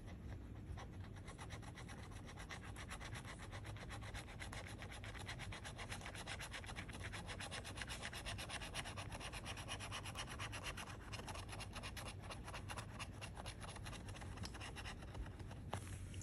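Metal scratcher tool scraping the coating off a scratch-off lottery ticket in rapid, even strokes, stopping shortly before the end.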